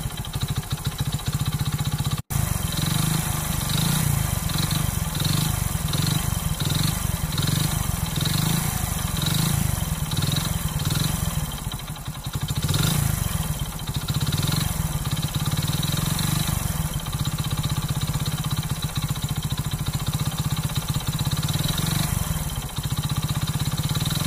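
Hero Splendor Plus's 100cc single-cylinder four-stroke engine running steadily, with the crank noise that the mechanic blames on wear in the crank's pin and engine bearings.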